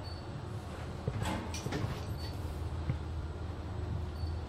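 KONE-modernized bottom-drive traction elevator car travelling upward, heard from inside the cab: a steady low hum of the ride, with a few light clicks and rattles between about one and two and a half seconds in.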